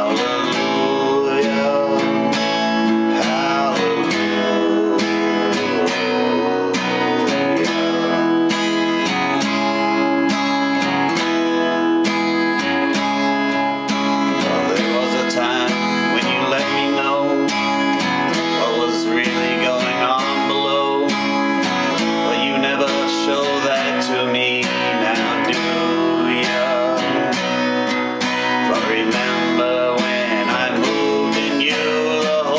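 Steel-string acoustic guitar played in a steady strummed rhythm, chords ringing on without a break.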